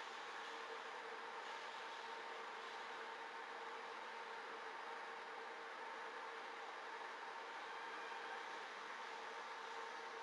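Steady background hiss with a faint, even hum running underneath: the constant noise floor of a webcam's audio feed, with no distinct sounds from the animals.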